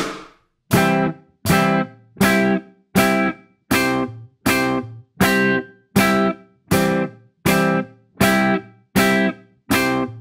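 Electric guitar playing C major chord inversions on the inside four strings. One chord is struck about every three-quarters of a second, rings briefly, and is cut short as the fretting hand releases the shape.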